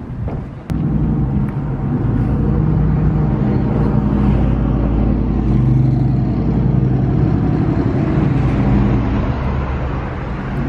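Road traffic: cars and trucks driving past on the street alongside, a steady low rumble that begins abruptly about a second in.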